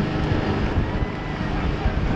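Open speedboat running fast over the sea: a steady engine drone under rushing wind and water noise, with wind buffeting the microphone.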